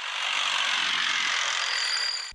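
Steady rushing, hiss-like field sound of an armoured-vehicle exercise under a white smoke screen, with little low rumble. Two faint high steady tones come in near the end.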